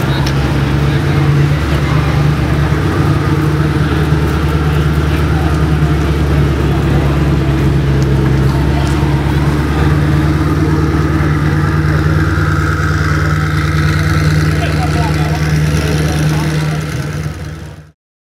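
Koenigsegg One:1's twin-turbocharged V8 idling steadily, with people talking around it. The sound fades out near the end.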